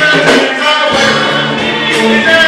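Live gospel music: a male lead singer and a group of backing singers singing over a live band.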